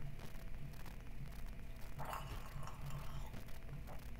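A mouthful of wine gurgled in the throat, a short wet burble about halfway in: drawing air through the wine to aerate it so it reaches the back of the palate.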